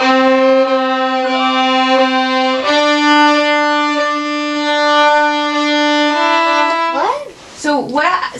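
Two violins bowed together in a counting exercise: long held notes that step up in pitch twice, stopping about seven seconds in, when talking starts.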